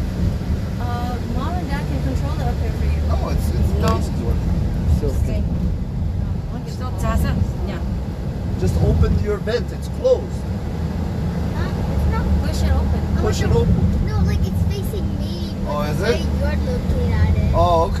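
Steady low rumble of a car's road and engine noise heard from inside the cabin while driving, with quiet talking over it.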